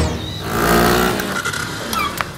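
Cartoon sound effect of a motor scooter engine running as it pulls up. It swells about half a second in and dies down near the end.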